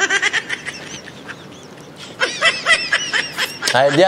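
High-pitched laughter in two bursts: a short one at the start and a longer one from about two seconds in, with a quieter pause between.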